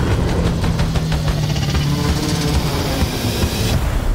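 Loud cinematic trailer music layered with dense action sound effects, building in a rising swell with a rushing hiss that cuts off sharply near the end.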